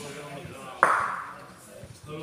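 A bocce ball strikes hard once about a second in, a sharp click with a short ringing fade. Men are talking in the background.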